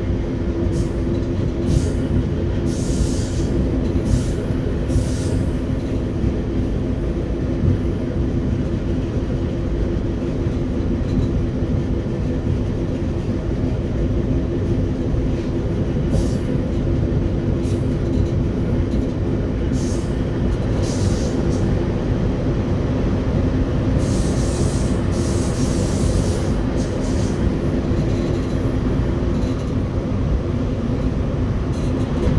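RER B electric commuter train heard from inside the driver's cab, running through a station without stopping: a steady rumble of wheels on rail with a low steady hum. Several brief high hissing bursts come and go over it.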